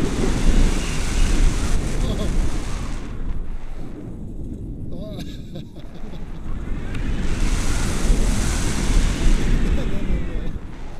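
Airflow rushing over an action camera's microphone during a tandem paraglider flight, a loud rumble and hiss that eases for a couple of seconds mid-way and then builds again. A brief voice-like sound about five seconds in.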